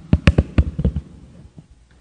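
Lectern microphone being handled and adjusted, giving a rapid series of thumps and clicks through the sound system during the first second.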